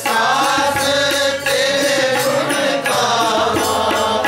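Sikh kirtan: a woman singing a devotional hymn in long, gliding melodic phrases, accompanied by tabla.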